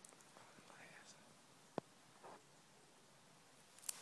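Near silence with faint whispering, broken by a single sharp click a little under two seconds in.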